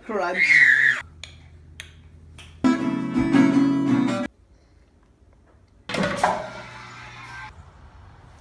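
Short clips cut together: a voice in the first second, then about a second and a half of loud strummed guitar music in the middle that stops abruptly, and another voice about six seconds in.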